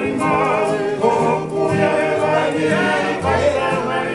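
A man sings a Tongan song with vibrato, over strummed ukulele and acoustic guitars and a steady bass line.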